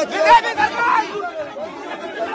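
Several people talking loudly over one another: crowd chatter, loudest in the first second.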